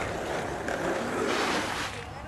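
Skateboard wheels rolling over asphalt: a steady, rough rolling noise.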